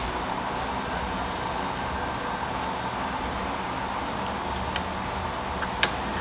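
Steady background hiss and hum, with a couple of light clicks near the end as a metal two-inch soil blocker is pressed into a plastic seedling tray to release soil blocks.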